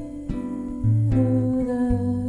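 Soft jazz on an acoustic guitar and an electric guitar, plucked chords and a melody, with a wordless hummed vocal line over them.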